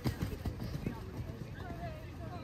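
Hoofbeats of a horse cantering on a sand arena: a run of soft, low thuds as the hooves strike the footing.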